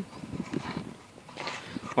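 Plastic elbow fitting being screwed by hand into a submersible pump's outlet: soft, irregular clicks and scrapes of the plastic threads and handling, with a brief lull midway.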